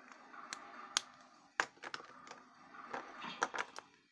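Sharp plastic clicks and taps as felt-tip markers are handled, their caps pulled off and snapped back on. There are about eight separate clicks, a few in the first two seconds and a quick cluster near the end.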